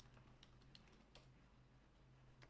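A few faint computer keyboard keystrokes, short isolated clicks spread over the first second or so, as a command is entered.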